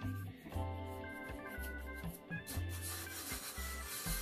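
Background music with held notes and a repeating bass, over the soft rubbing of a hand spreading flour across a kitchen worktop.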